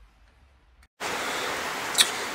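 About a second of near silence, then a steady hiss switches on abruptly: the self-noise of an old Sony Handycam camcorder's recording. A single sharp click comes near the end.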